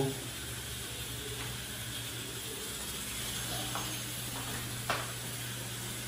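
Kitchen room tone: a steady low hum under a faint hiss, with a faint voice in the background a little past halfway and a single sharp click near the end.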